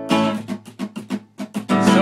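Acoustic guitar strummed in a quick, choppy rhythm, each stroke cut short.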